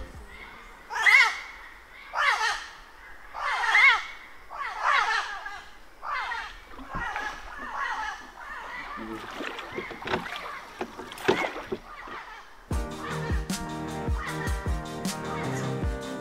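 A bird calling four times in loud, harsh, downward-sliding squawks about a second apart. After that come faint scattered knocks and splashes, and background music comes in about three quarters of the way through.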